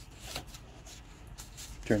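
Light rustling and scraping of paper as a thin booklet's page is handled and lifted to be turned.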